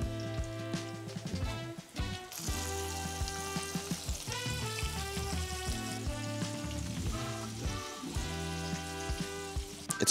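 Battered mushrooms frying in hot grease in a cast-iron skillet, a steady sizzle that grows louder about two seconds in, with background music underneath.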